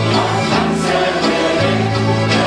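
An accordion band with guitars playing a gospel song, several accordions holding chords over a bass line that changes note about every half-second to second, with a group of voices singing along.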